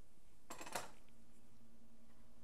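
Quiet room tone with a faint steady hum, broken by one brief soft swish about half a second in.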